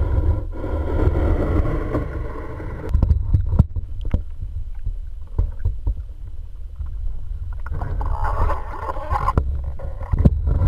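Muffled water sloshing and bubbling, heard through a GoPro's sealed waterproof housing as it moves in and out of the water, over a steady low rumble. Several sharp knocks from the housing being bumped fall in the middle, and the sloshing grows louder again near the end.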